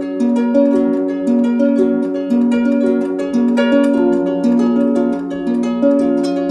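Instrumental music with no singing: plucked strings playing a quick, repeating pattern of notes.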